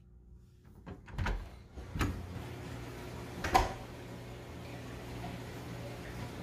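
A door knob clicking and a door being opened, with three sharp knocks, the last near the middle and the loudest. Once the door is open, a steady low hum comes in and holds, from the room's aquarium pumps and filters.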